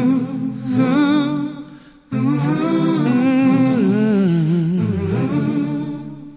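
A male voice humming a wordless, wavering melody a cappella, without accompaniment. There is a short break about two seconds in, and the voice fades near the end.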